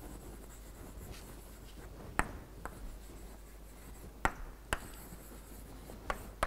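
Chalk writing on a blackboard: faint scratching of the chalk with a few sharp taps, two about two seconds in and two more past the four-second mark.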